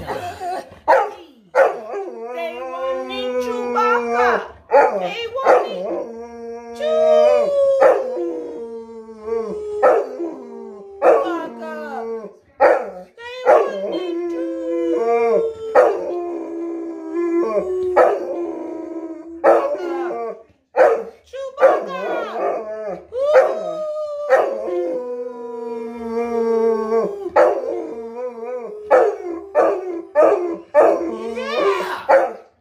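A large black dog and a woman howling together: long drawn-out howls, each held for a few seconds and sliding down in pitch, repeated again and again. Short sharp sounds break in between the howls.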